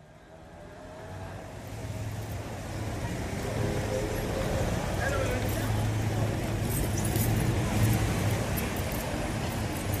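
Street traffic noise fading in over about three seconds to a steady rumble, with faint voices mixed in.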